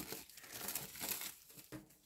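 Clear plastic shrink-wrap being slit with a utility knife and peeled off a small cardboard box: faint, irregular crinkling of the film.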